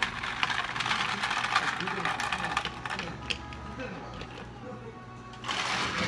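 Ice cubes clattering in clear plastic cups as iced cereal drinks are handled and poured, a busy run of small clicks with a louder pouring rush near the end, over background music.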